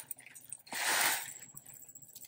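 Crisp fried snack mix poured from a foil pouch into a stainless steel canister: a brief rustling patter of small pieces sliding out of the foil and landing on the pile, loudest about a second in.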